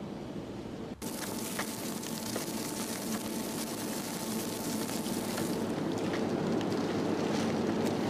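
Meat sizzling and crackling over a disposable barbecue. The sound starts suddenly about a second in.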